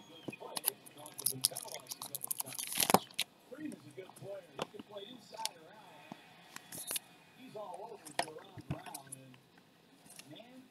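Baseball cards and their packaging handled on a tabletop close to the microphone: scattered clicks, taps and rustles of card stock and wrapper, the loudest a sharp snap about three seconds in. A faint voice murmurs underneath.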